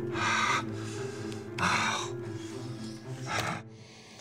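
A man's three loud breaths, about a second and a half apart, over low, steady background music that cuts off just before the end.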